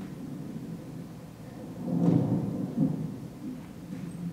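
Low, rumbling thuds of footsteps on a wooden stage floor, loudest about halfway through and again shortly after.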